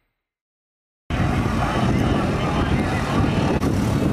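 About a second of silence, then busy city street noise cuts in abruptly and holds steady: road traffic and the voices of a crowd.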